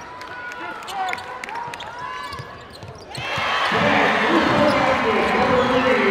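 Basketball game on a hardwood court: sneakers squeak and a ball bounces. About three seconds in, the arena crowd breaks into loud cheering and shouting.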